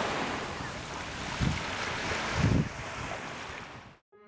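Small waves washing onto a sandy beach in a steady rush of surf, with two low gusts of wind buffeting the microphone about midway.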